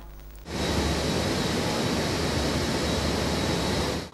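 Steady, even machinery noise in an ore-processing plant hall, with a low hum beneath it. It starts about half a second in and cuts off at the end.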